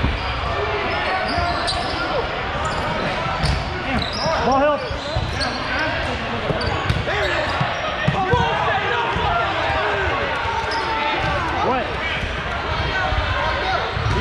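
Dodgeballs bouncing and thudding on a hardwood gym floor over and over, mixed with several people's voices calling out, all echoing in a large hall.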